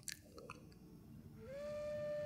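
Faint mouth clicks in a pause between words, then about one and a half seconds in a soft, steady held note of background music begins.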